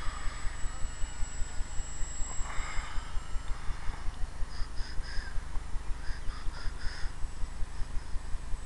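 A bird calls in two quick series of short calls, three and then four, about halfway through. Under it runs a steady low thudding pulse, about four or five beats a second.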